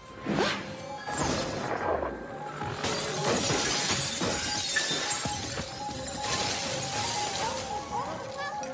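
Film sound effect of magical ice crystals shattering and falling: a sharp crack about half a second in, a run of glassy crashes, then a sustained rushing noise. An orchestral score holds steady notes underneath.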